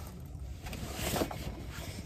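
Steady low rumble of car-cabin background noise, with faint rustling as a backpack is handled.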